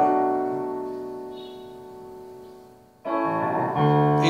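Piano chord struck and left to ring, fading away over about three seconds, then a new chord struck near the end.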